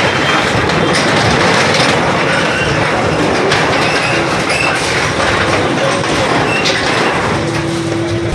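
JCB backhoe loader tearing down a shop of corrugated metal sheets: continuous loud crunching, scraping and clattering of the tin sheeting as the bucket rips it apart.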